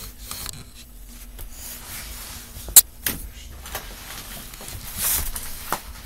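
Rustling and handling of objects while tidying, with a sharp click or knock a little under three seconds in and a louder rustle about five seconds in.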